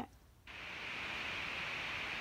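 A steady, even hiss that starts about half a second in, after a moment of near silence.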